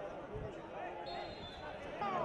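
A football being kicked, one dull low thump about half a second in, with faint shouts from players on the pitch.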